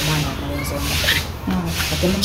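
A rubbing, rustling noise, then a voice starting again about a second and a half in.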